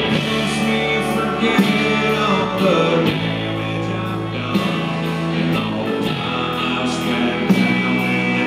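Live country-rock band music: a male voice singing over electric guitar and a steady beat.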